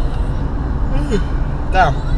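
Steady low rumble of a car's road and engine noise heard inside the moving cabin, with a short click right at the start.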